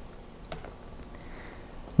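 Quiet room tone with a faint click, then two very short, high-pitched electronic beeps in quick succession about a second and a half in.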